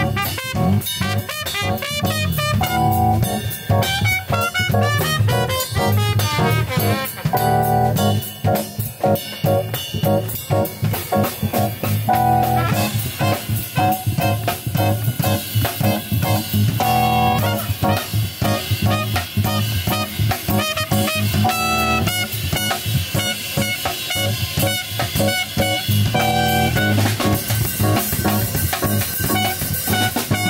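Live small-group jazz: a trumpet playing the melody over a drum kit and electric bass guitar, with steady cymbal and drum strokes throughout.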